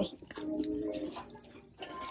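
Handling of a handbag: small clicks and clinks from its metal chain strap and hardware, with faint held notes of background music in the first half.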